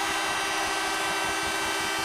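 Arena goal horn sounding one long, steady blast over crowd noise, signalling a goal just scored.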